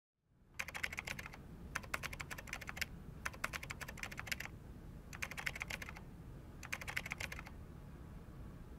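Typing on a computer keyboard: five short runs of rapid keystrokes separated by brief pauses.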